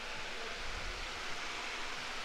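Steady, even hiss of indoor background room noise, with no distinct events.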